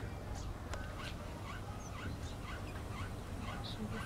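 An animal calling in a series of short, rising squeaky notes, several a second, over a steady low rumble.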